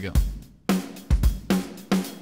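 Programmed drum-kit groove playing back from a Maschine project at about 111 beats a minute, with a steady kick and snare and hi-hat or cymbal on top.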